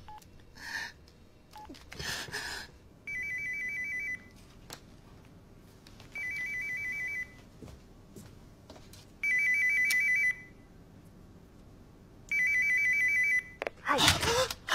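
A telephone's electronic ringer ringing four times, each warbling ring lasting about a second, with about two seconds of quiet between rings.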